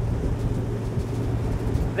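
Twin outboard engines of a rigid inflatable boat running at planing speed: a steady low drone with the rush of water and wind over it.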